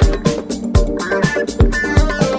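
House music from a DJ mix: a steady kick drum on every beat, about two and a half beats a second, under sustained chords and ticking hi-hats.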